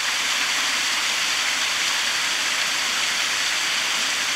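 A steady, even hiss of noise, strongest in the upper range, with no clear source.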